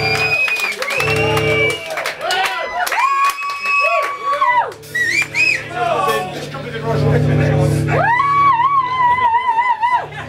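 Live punk band on stage between songs: long held electric-guitar notes and low bass notes through the amplifiers, with shouting over them.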